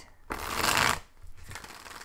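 Tarot deck being shuffled by hand: a loud rush of cards sliding against each other for about half a second, then a quieter run of rapid small card-on-card clicks as the shuffling goes on.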